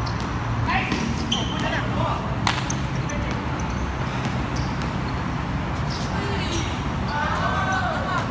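A basketball bouncing on an outdoor concrete court, sharp impacts at irregular intervals, with players' short shouts and a steady low rumble of traffic underneath.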